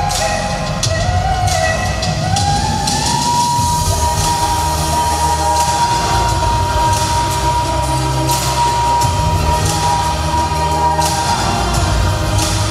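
Staged pop song performed live, with a female lead voice over a steady beat. About three seconds in, one long high note is held for some eight seconds before it drops away.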